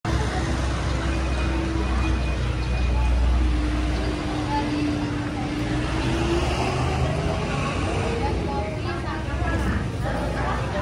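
Road traffic: a vehicle engine running close by, with a low rumble strongest in the first few seconds and a tone that rises slightly in pitch midway. Indistinct voices join near the end.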